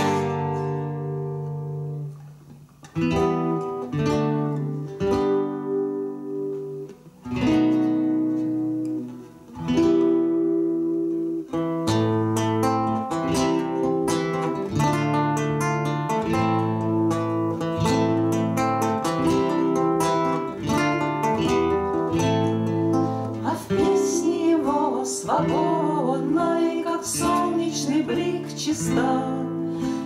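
Two acoustic guitars playing an instrumental passage of a song: separate strummed chords left to ring out with short pauses in the first ten seconds, then steady strumming and picking. A voice comes back in near the end.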